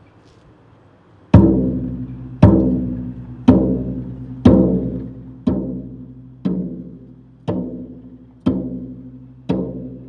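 Bass drum struck with a soft mallet: after about a second of quiet, slow even strokes about once a second, nine in all, each ringing and fading before the next. The first four strokes are the loudest; the rest are a little softer.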